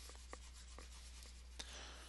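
Faint scratching and a few light taps of a stylus on a drawing tablet while writing is erased, over a steady low electrical hum.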